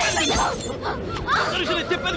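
Fight-scene sound track: cries and shouts from the struggling pair, with a shattering crash in the first half second and a thump just after.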